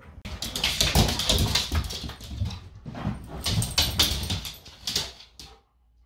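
A husky vocalizing excitedly in a long, unbroken run of calls, stopping about half a second before the end.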